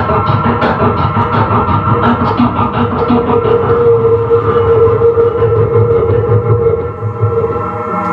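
Live electronic music played on synthesizers and a pad sampler: dense held synth tones over a rhythmic pulse that drops out about halfway through, leaving one sustained tone, with a brief dip in level near the end.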